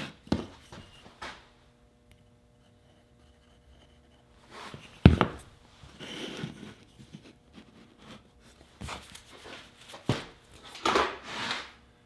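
Wooden picture-frame moulding and a glue bottle handled on a plywood workbench during a frame glue-up: a sharp knock about five seconds in, then softer taps and rubs of wood on wood.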